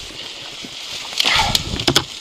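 Dry branches and bracken rustling and crackling as someone pushes through dense scrub by hand. The sound grows louder a little past a second in, with a few sharp snaps near the end.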